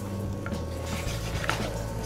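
Quiet background music with two light knocks, about a second apart, from a wooden spoon against a stainless steel saucepan as rice is stirred.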